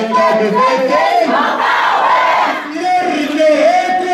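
Marching protest crowd chanting slogans in Arabic, a chanted line carried on a held pitch, with a louder swell of many voices shouting together in the middle.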